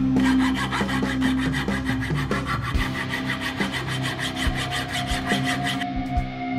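A small hand frame saw cutting a block of wood in quick, even strokes, then stopping sharply. Background music plays throughout.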